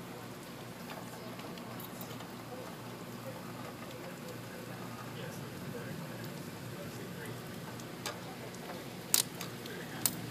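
Storm wind rushing steadily through the leaves of backyard trees, with light rain patter. A sharp knock comes a little after nine seconds in, with a smaller click just before it.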